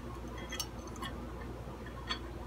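A few faint light clicks, about half a second and a second in, over a steady low hum: small metal tools being handled at a guitar pickguard's wiring, as the pickup wires are about to be unsoldered.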